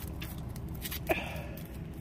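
Light crunching steps on icy, crusted snow, a few scattered clicks over a low rumble, with one brief falling-pitched vocal sound about a second in.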